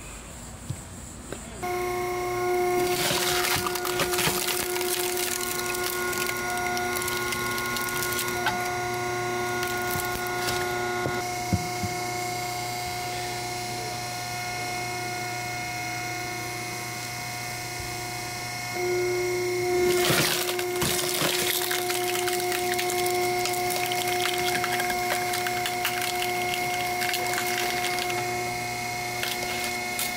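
Hydraulic log splitter running: a steady motor-and-pump whine that starts about two seconds in, its tone shifting a couple of times as the ram works. Wood cracks and splinters under the wedge, loudest a few seconds in and again about two-thirds of the way through.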